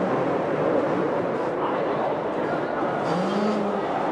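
Two-stroke supercross dirt bike engines revving hard under racing over a steady, noisy din. About three seconds in, one engine rises in pitch and holds.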